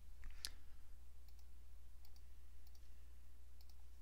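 Computer mouse button clicks: one sharp click about half a second in, then a few fainter ticks, over a steady low hum.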